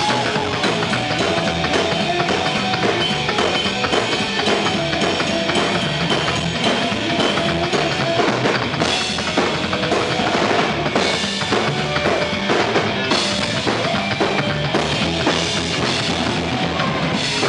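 Live psychobilly band playing loud: a driving drum kit with a coffin-shaped upright bass plucked by hand and an electric guitar.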